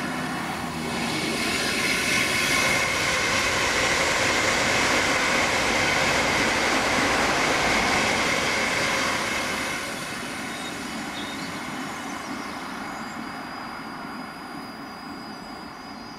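South Western Railway electric passenger train passing along the line: a rushing rumble of wheels on rail that swells about a second in, holds for several seconds, and fades after about ten seconds. A thin steady high-pitched tone runs beneath it.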